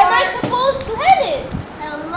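Children's speech: boys talking, with lively, rising and falling voices.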